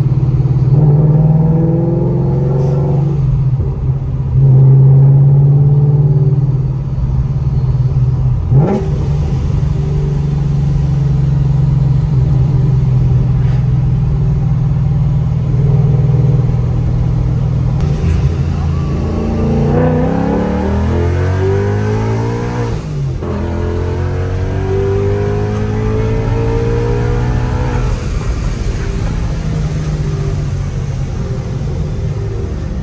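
Supercharged Ford Mustang V8 heard from inside the cabin, running steadily at cruise. About two-thirds through, the engine pitch climbs under acceleration, dips briefly at a gear change, then climbs again.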